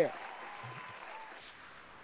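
Applause: an even wash of clapping that slowly fades away.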